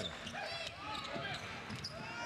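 A basketball bouncing on a hardwood court during live play, heard as several sharp knocks, with voices around the arena.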